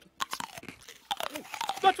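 Cartoon eating sound effect: a quick run of crunching bites and chomps as a character gobbles food. A man's voice comes in right at the end.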